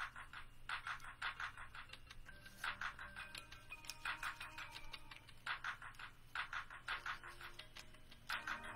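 Telephone hold music: a looping beat of quick struck notes in short runs, about one run every second and a half.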